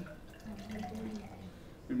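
Red cabbage juice being poured from a glass beaker into a tall glass graduated cylinder: a faint pouring and trickling of liquid.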